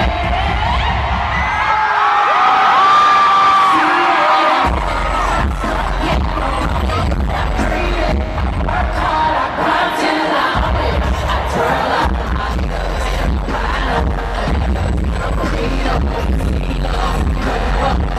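Live stadium concert music heard from the crowd: a loud pop track with a heavy bass beat, singing and crowd noise. The bass drops out twice for a couple of seconds, about two seconds in and again around nine seconds in, leaving the singing and higher parts before the beat comes back.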